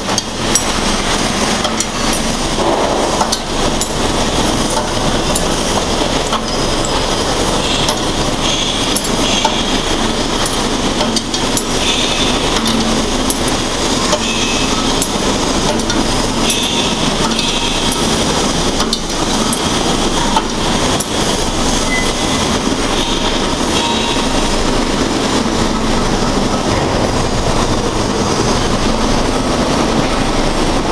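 Mechanical shearing machine for pipe and round bar running, a steady machine noise with dense clattering and irregular knocks throughout.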